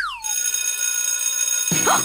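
Electric school bell ringing: a steady, unbroken metallic ring that signals the start of class.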